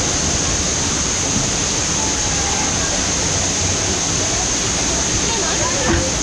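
Steady rush of water flowing down into the tube waterslide, with faint voices in the background.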